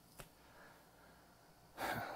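Near-quiet room tone with a faint click just after the start, then a man's sharp intake of breath near the end.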